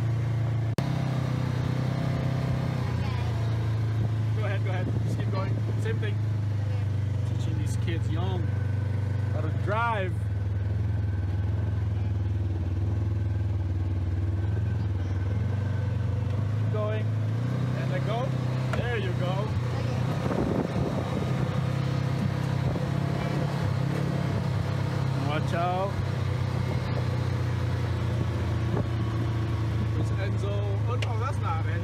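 Side-by-side UTV engine running steadily under way, heard from the cab, its drone stepping up in pitch a little past halfway as it speeds up. Faint voices come and go over it.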